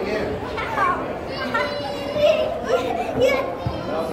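Young children talking and calling out, with other voices in the background.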